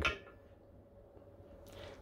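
Near silence: faint room tone with a steady low hum, and a soft short hiss just before the end.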